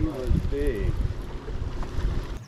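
Wind buffeting the microphone with a steady low rumble, while a man's voice calls out briefly in the first second.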